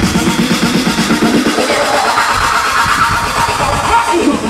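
Electronic dance music from a DJ set, played loud over a large sound system, with a steady beat; about halfway through the bass thins out while a higher layer builds.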